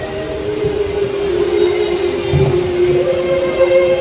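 Mixed choir singing, holding long chords; the lower part steps down about a second and a half in, and a higher note comes in near the three-second mark.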